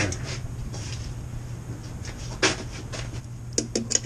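Steel tape measure being worked against a pipe for a measurement: one sharp click about two and a half seconds in and a quick run of light clicks near the end.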